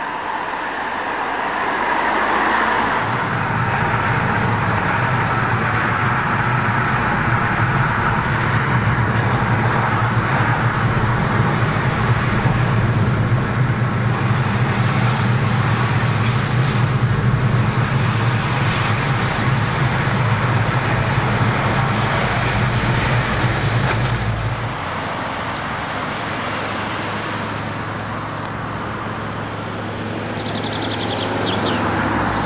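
Car driving, heard from inside the cabin: steady engine and road noise that drops in level about 25 seconds in.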